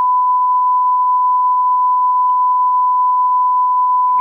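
Loud, steady 1 kHz test-tone beep: the single unbroken sine tone that goes with a TV colour-bars test card.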